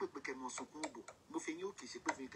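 A person talking quickly and steadily: speech only.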